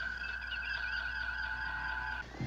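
Starship bridge background sound effect: a steady electronic hum with several held high tones, and a faint warbling computer chirp in the first half.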